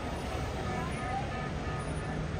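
City street ambience: a steady traffic rumble with the voices of passers-by.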